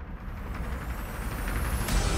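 A dramatic riser sound effect: a rising swell with high whistling tones sliding upward, growing louder to a sharp hit just before the end, over a low rumbling music bed.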